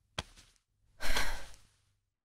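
A person sighing: a short click, then about a second in a breathy exhale lasting about half a second.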